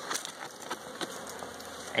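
Honeybees buzzing steadily around an opened hive, with a few light ticks and scrapes as a hive tool cuts slits in the newspaper laid over the frames.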